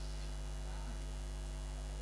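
Steady electrical mains hum from the stage microphone and public-address system, even in level throughout.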